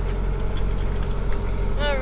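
Steady low drone with a constant hum aboard a small sailboat underway.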